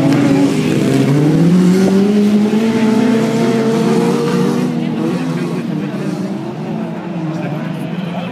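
Autocross race car engines revving hard as the cars accelerate away across a dirt track. The engine note climbs in pitch for the first few seconds, then grows fainter as the cars pull away.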